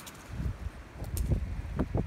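Wind on the phone's microphone, coming as irregular low rumbling gusts, with a couple of faint short clicks.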